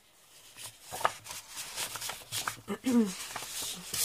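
Sheets of designer paper being handled and swapped: a run of short paper rustles, slides and light taps. A brief voiced hum comes a little before three seconds in.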